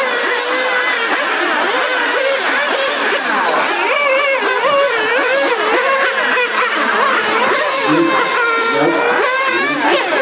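Small two-stroke glow (nitro) engines of 1/8-scale on-road RC race cars running at high pitch. Their revs keep rising and falling as the cars accelerate and brake around the track, with several engines overlapping.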